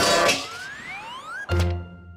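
Cartoon sound effects over music: a loud clattering crash at the start, a rising whistle through the middle, and a low thud about one and a half seconds in.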